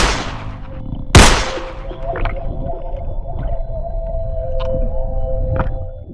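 Two loud impact hit sound effects, a little over a second apart, the first right at the start, each trailing off slowly. They sit over a steady sustained drone, with a few faint ticks later, and fade out at the end.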